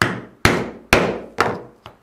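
Mallet striking a pricking iron, driving its prongs all the way through leather to punch stitching holes. Four sharp blows about two a second, then a lighter fifth near the end.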